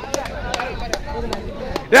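A few sharp, irregularly spaced hand claps over faint voices in the background.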